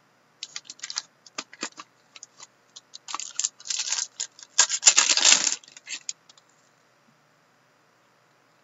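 A stack of trading cards in plastic sleeves and toploaders being shuffled and flipped through by hand. It is a run of plastic clicks and scraping that grows busiest in the middle and stops about six seconds in.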